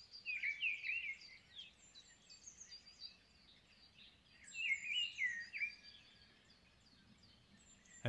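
Birds calling in two short bursts of quick chirps, one at the start and one about four and a half seconds in, over a faint steady outdoor hiss.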